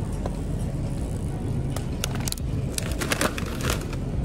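A plastic snack bag crinkling in short bursts as it is handled and put back on a shelf, over a steady low rumble.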